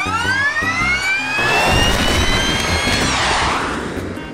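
Small jet engine spooling up: a high whine that rises steadily in pitch, joined about halfway through by a swelling rush of exhaust noise, the whine fading away near the end.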